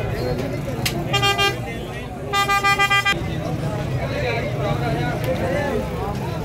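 A vehicle horn honking in two quick runs of short toots, the first about a second in and the second just over two seconds in, over a background of crowd chatter.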